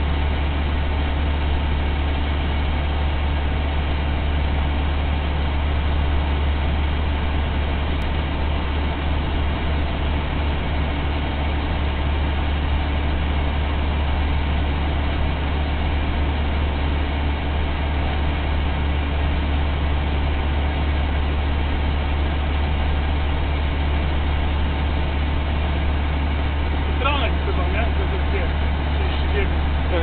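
Steady low drone of a Renault Magnum truck's engine and road noise heard from inside its cab at motorway cruising speed.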